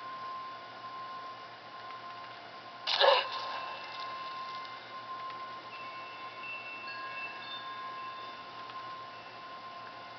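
Horror film soundtrack: a sudden loud crash-like hit about three seconds in, with a short ring, then faint high held notes over a steady thin high tone.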